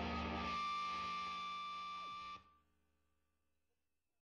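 Distorted electric guitar letting the final chord of a punk rock song ring out, with a high steady tone over it, then cutting off suddenly about two and a half seconds in.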